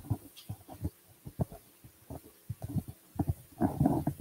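Handling noise from a clip-on lapel microphone being passed over and fitted: irregular dull bumps and rustles against the mic, with a denser scuffle near the end.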